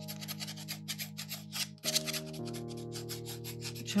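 Glass ink pen scratching on paper in quick, repeated strokes. Soft background music of held chords plays underneath and changes chord a little before halfway.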